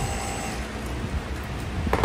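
Steady rush of air from electric fans blowing across a spinning test rotor, with a low rumble and a faint steady motor whine that fades about a quarter of the way through.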